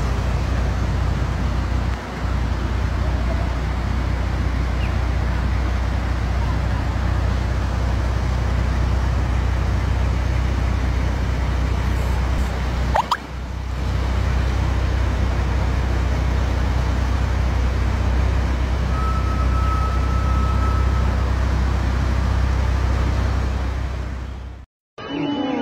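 Steady loud rushing roar of a river in flood, with a deep rumble underneath; it dips briefly about halfway through.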